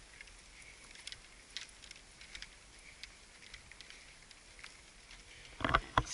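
Faint, scattered light clicks and rattles from a golf bag and push cart being wheeled over grass. A man's voice starts just before the end.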